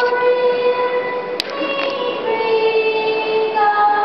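A boy's solo singing voice holding long, steady notes in a slow song, with one sharp click about one and a half seconds in.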